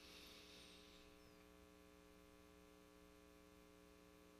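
Near silence: a faint, steady electrical hum in the recording.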